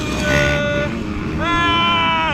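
An injured man moaning in pain after a motocross crash that dislocated his shoulder and broke his neck. The moans are long, drawn-out cries held at one pitch and sliding at their ends, over a low rumbling background.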